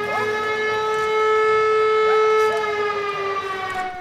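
Civil defence siren sounding one long, steady wail for the 17:00 Warsaw Uprising remembrance (Godzina W). Its pitch begins to sink slowly in the last second or so.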